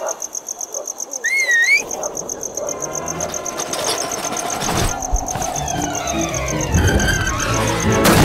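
Cartoon soundtrack of music and sound effects: a short wavering whistle-like glide about a second and a half in, then a swelling, rumbling build-up with rising tones that grows louder toward the end.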